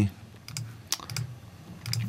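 A handful of separate clicks from a computer keyboard and mouse as a form is filled in, with a short low murmur of a voice near the end.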